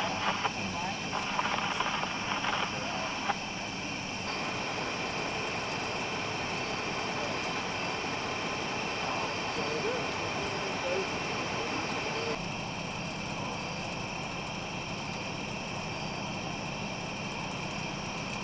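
Indistinct voices of people talking in the first few seconds, then a steady background hum with no clear event.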